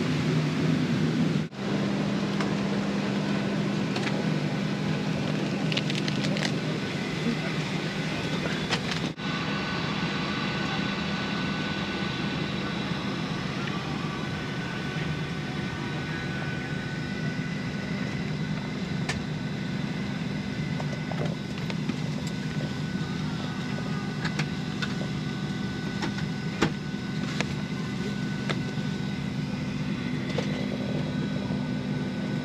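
Steady hum of a parked Boeing 737-800's cabin air and ventilation system heard inside the cabin, with faint steady whining tones above it. It is broken by two brief dropouts, one about a second and a half in and one near nine seconds.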